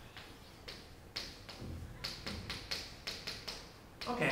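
Chalk tapping and scraping on a chalkboard as numbers are written: about a dozen short, irregular taps, coming closer together in the second half.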